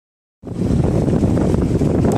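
Wind buffeting the camera microphone, a loud, steady low rumble that cuts in about half a second in.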